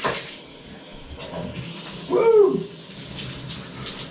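Cold shower spray running steadily onto a person in a tub, with one short rising-and-falling vocal exclamation at the cold water about two seconds in.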